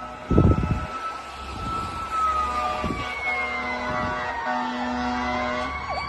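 Emergency vehicle sirens wailing as the units approach, one tone sliding slowly down, with a brief loud low rush about half a second in. From about halfway on, repeated horn blasts sound over the sirens, the longest near the end.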